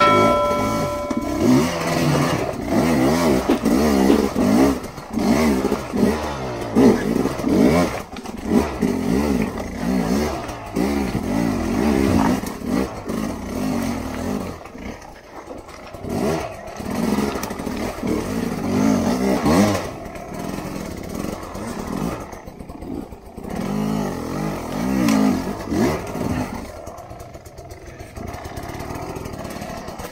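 Dirt bike engine under riding load, revving up and dropping back again and again as the throttle is worked, easing off near the end. A brief steady tone sounds at the very start.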